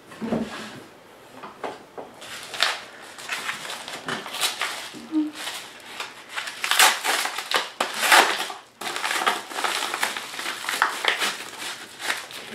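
Paper mailer envelope being torn open and handled: a run of crinkling and ripping noises, loudest past the middle.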